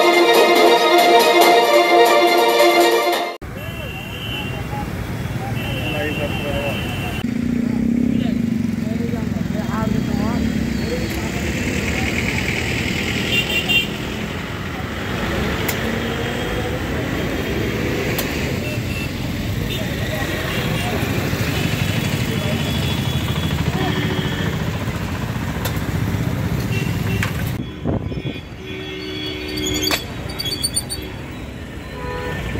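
A few seconds of news-intro music, then outdoor street noise: traffic, vehicle horns sounding now and then, and people's voices in the background.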